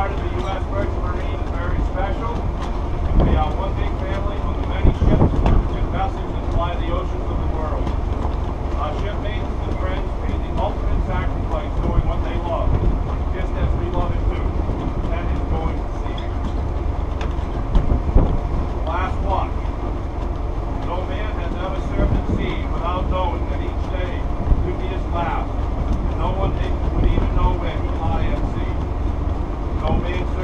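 A man's voice speaking at a distance, hard to make out under a steady low rumble from wind and the ship's machinery on an open deck at sea.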